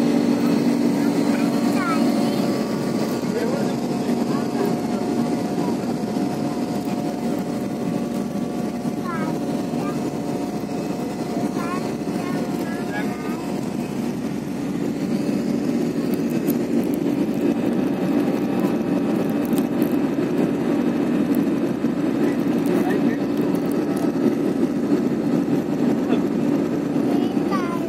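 Airliner cabin noise in flight, heard from a window seat: the jet engines and airflow make a steady, even hum with faint tones over it as the aircraft climbs.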